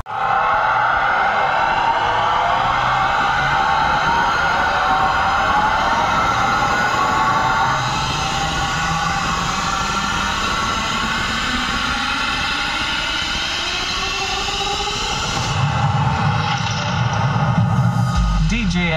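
Electronic music of slowly gliding synth tones played loudly through a large DJ box-speaker stack, with a low tone rising slowly through the middle and the bass swelling near the end.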